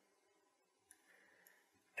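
Near silence with two faint computer mouse clicks about a second in, about half a second apart.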